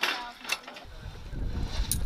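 Metal clinks of parachute static-line hooks and gear on a training rig: a sharp clink at the start, another about half a second in and a third near the end, over a low rumble from about a second in.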